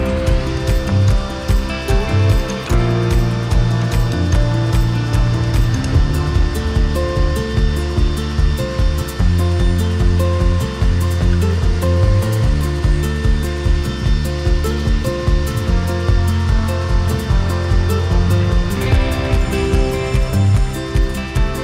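Craftsman table saw running and ripping hardwood boards pushed along the fence, its steady whine stopping shortly before the end. Background music plays over it throughout.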